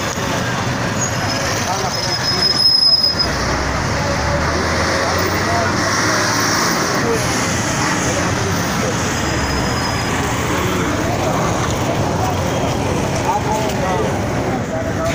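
Street traffic noise with motorcycle and vehicle engines running and people's voices mixed in. A heavier steady engine drone runs from about three seconds in to about ten, as a tanker truck is passed.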